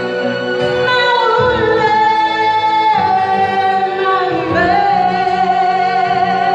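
A woman singing live into a microphone over backing music, holding long notes with vibrato and sliding between them.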